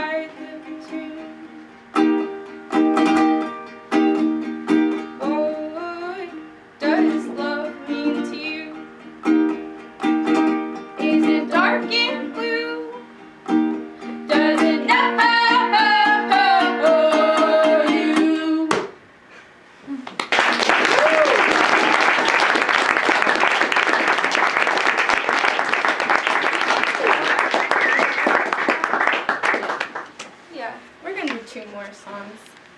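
Ukulele strummed with two women's voices singing together; the song ends about two-thirds of the way through, and after a short pause a small audience applauds.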